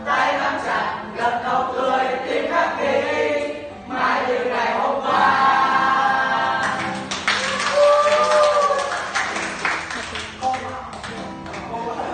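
A large group of young voices singing a song together, with a long held note about eight seconds in before the singing eases off.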